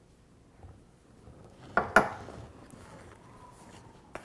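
A metal spoon clinks sharply a couple of times against a glass and bowl about two seconds in, followed by faint scraping as sugar is spooned into a plastic bowl of flour.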